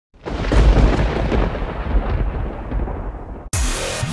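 A deep, thunder-like rumble that comes in suddenly and slowly fades, cut off about three and a half seconds in by electronic music with falling pitch sweeps.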